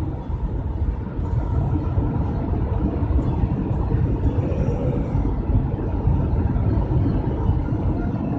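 Steady low rumble of a car on the move, heard from inside the cabin.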